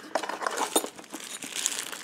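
Clear plastic packaging and tissue paper crinkling in a hand as a small bagged part is picked out of a cardboard box: a run of irregular, moderately loud crackles.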